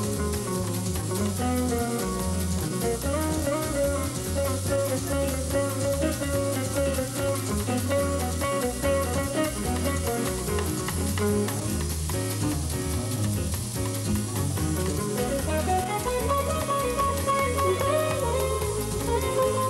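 Live jazz-fusion band playing fast: an archtop hollow-body electric guitar plays a quick melodic lead over a drum kit and low bass notes.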